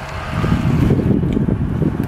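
Wind buffeting the microphone, heard as a loud, low, uneven rumble.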